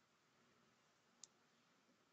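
Near silence: faint hiss, broken by one brief sharp click a little after a second in.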